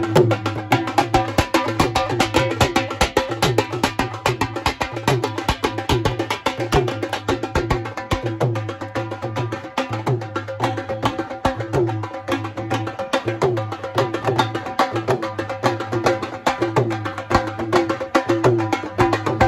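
Procession drum group playing a fast, driving rhythm: large double-headed dhol barrel drums beaten with sticks and a side drum played with two sticks, with a deep beat repeating steadily under dense rapid strokes.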